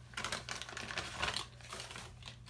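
A quick run of light clicks and rustles from small plastic cosmetic packaging being handled.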